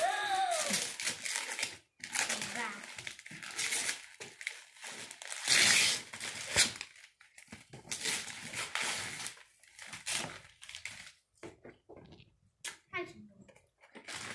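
Gift-wrapping paper being torn and crumpled by hand in repeated rustling bursts, the loudest about halfway through.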